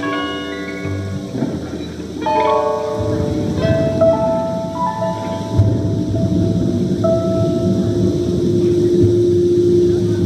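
Electric piano playing slow, held notes in a song's outro, over a thunder-and-rain sound effect that swells about three seconds in.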